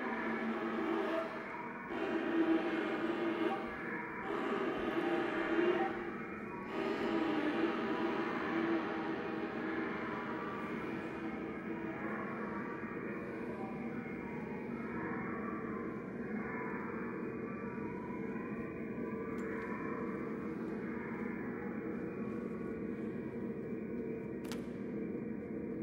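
Contemporary chamber ensemble music: sustained, droning pitched tones that swell in pulses about every two seconds at first, then settle after about eight seconds into a steadier held texture.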